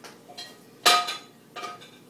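Dishes clinking off-screen: three sharp knocks with the same short ringing tone, the middle one loudest.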